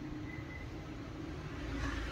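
Maruti Suzuki Swift Dzire's 1.3-litre DDiS four-cylinder diesel engine idling steadily, heard with the bonnet open.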